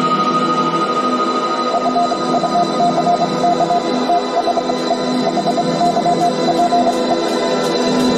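Electronic music with sustained organ-like chords; a rapid stuttering note pattern joins about two seconds in.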